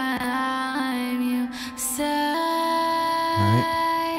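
A sung vocal played through Antares Auto-Tune Pro X with the hard Auto-Tune effect at zero retune speed. Each note is held perfectly flat and snaps in steps to the next pitch, giving the robotic, quantized sound.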